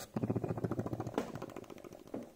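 A person imitating a helicopter's rotor with his mouth: a rapid chopping pulse that fades away.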